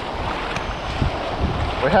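Wind buffeting the microphone over the wash of shallow surf, with gusty low rumbles, as water sloshes around wading legs.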